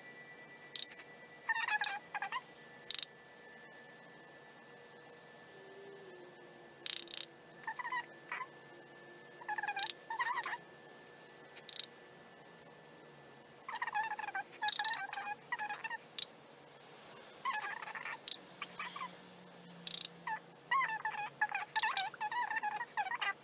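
Short bursts of high, squeaky chirping calls from a small animal, repeating every second or few, over a faint steady hum.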